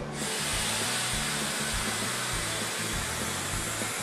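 A steady hiss from milking-parlor equipment starts suddenly and holds even, under background music.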